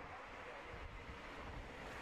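Faint, steady wind rumble on an outdoor microphone, with no engine note.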